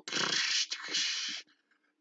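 A man's breathy exhale, about a second and a half long.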